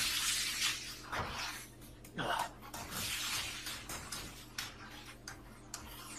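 Anime fight sound effects, played at low level: bursts of hissing noise and a scatter of sharp crackles, with a couple of quick falling sweeps.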